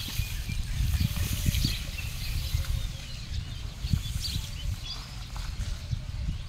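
Open-air rural ambience: a low, uneven rumble with faint high chirps scattered over it.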